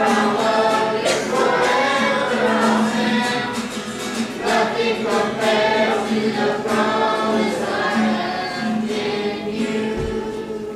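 A youth choir of mixed voices singing a worship song together in continuous phrases, accompanied by acoustic guitar.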